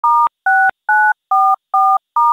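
Telephone keypad tones: five short two-tone beeps in an even rhythm, about two a second, as digits are dialled.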